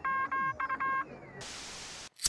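Radio-tuning sound effect: a quick run of about five short buzzy electronic beeps at one pitch, a faint whistle gliding downward, then a hiss of static for the last half second.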